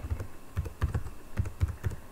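Computer keyboard being typed on: a quick, uneven run of about a dozen keystrokes.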